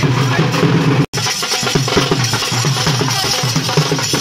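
Loud music with a fast, dense beat on a dhol drum. The sound cuts out for an instant about a second in.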